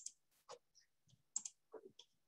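Faint computer clicks and keystrokes: a few short, sharp clicks, two of them quick double clicks, with softer knocks between, from a mouse and keyboard being used to place and type text.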